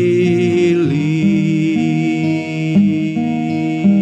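A man singing a hymn, holding long notes with a slight vibrato, while strumming a steel-string acoustic guitar.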